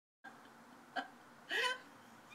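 A woman's voice making two brief non-word sounds over quiet room tone: a short sharp one about a second in, then a slightly longer one that rises in pitch.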